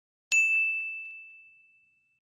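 A single bright bell ding, the notification-bell chime of a subscribe-button animation, struck once about a third of a second in and ringing on as one clear high tone that fades away over about a second and a half.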